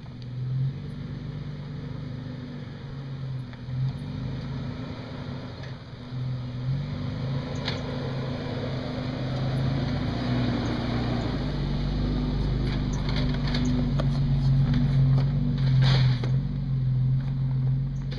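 Toyota FJ Cruiser's 4.0-litre V6 running at low crawling speed, a steady low engine note that grows louder as the truck comes close and passes. Tyres crunch and click over gravel and dirt, loudest late on.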